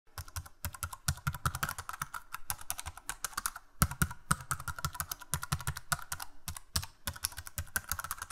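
Rapid computer-keyboard typing, a steady run of irregular keystroke clicks, several a second. It is a typing sound effect that goes with on-screen text being typed out.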